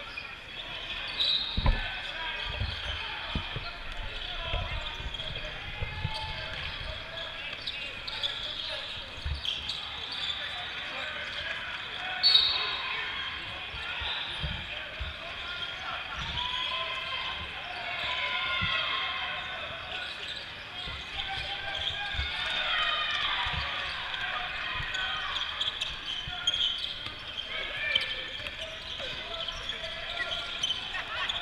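Basketball game sounds in a large hall: a ball bouncing on the court in scattered thuds, over continuous chatter of players and spectators, with one sharp sudden sound about twelve seconds in.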